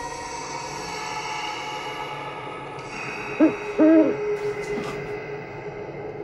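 An owl hooting twice about three and a half seconds in, the second hoot longer, over a steady background music drone.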